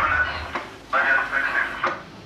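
A voice in two short stretches, followed by a sharp click near the end.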